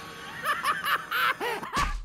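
Cartoon character's villainous cackle: a run of short, bouncing laughs starting about half a second in.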